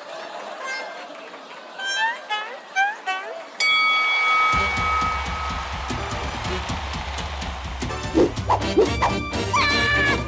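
Cartoon voice effects: short squeaky rising chirps and grunts, then a single held bell-like ring about three and a half seconds in. Upbeat background music with a heavy bass beat follows, with more cartoon vocal sounds over it near the end.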